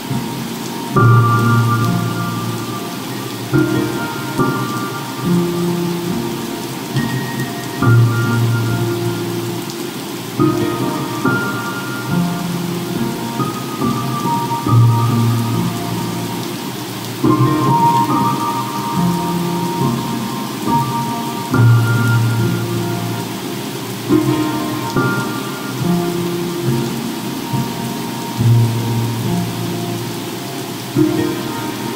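Slow, soft piano music, a new chord or note struck every two to three seconds and left to ring, over a steady bed of ocean surf and fireplace crackling.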